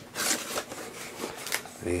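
Cardboard box being opened by hand: the flaps rustle and scrape in a burst at the start, with a couple of short scuffs later as the contents are handled.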